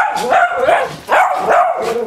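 Cavalier King Charles spaniel puppy barking rapidly in short, sharp barks, about five or six in two seconds.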